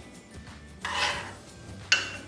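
A metal spoon scraping in a bowl of strawberry sauce, then a single sharp clink of the spoon against the bowl near the end.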